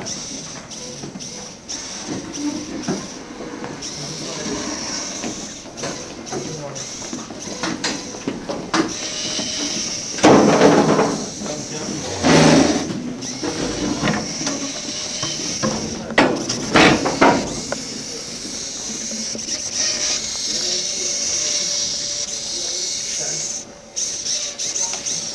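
Small two-wheeled robot's drive servo motors whirring as it spins and shuffles about on a concrete floor, with indistinct background chatter of voices and a few louder bursts in the middle.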